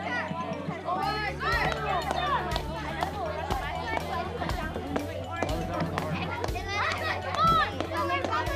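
Children's voices calling and chattering, with a music track with a steady bass line underneath.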